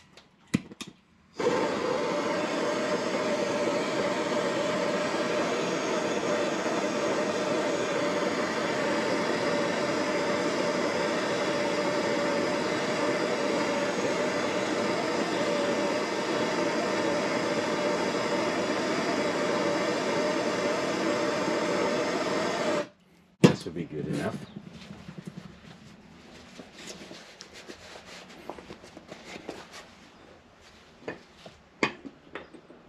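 Handheld gas blowtorch heating a water pump drive gear in a vise so it can be pressed onto the pump shaft. After a couple of clicks, the flame lights about a second and a half in and hisses loudly and steadily for about twenty seconds, then shuts off abruptly. A sharp metal clank and lighter handling noises follow.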